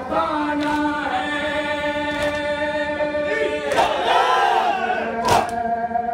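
A group of men chanting a noha, a Muharram lament, together in long held notes. A few sharp slaps of chest-beating (matam) cut through, about two seconds and five seconds in.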